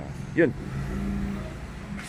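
A motor vehicle engine running at a steady low hum.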